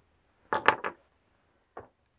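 A quick cluster of three or four light clicks about half a second in, then one faint click near the end, with near silence otherwise.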